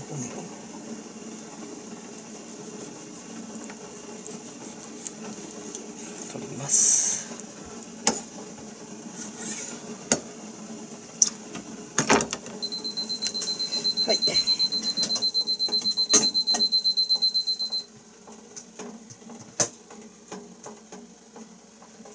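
Kitchen knife working a cutlassfish fillet on a plastic cutting board: scattered taps and knocks, with one loud scrape about seven seconds in. From about twelve to eighteen seconds a kitchen appliance gives a rapid run of high electronic beeps, then stops.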